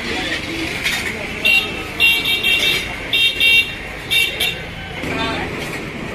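Crowd chatter at a busy roadside food stall, broken by several short, high-pitched horn toots from passing traffic, some in quick runs of beeps.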